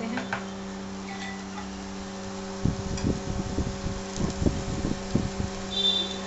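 Chopped spinach dropped by hand from a steel bowl into a frying pan on an induction cooktop: a run of soft, irregular knocks and thuds in the second half, over the cooktop's steady hum. A brief high ring near the end.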